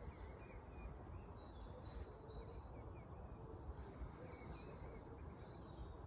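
Faint bird chirping: scattered short, high chirps over a low, steady background hum.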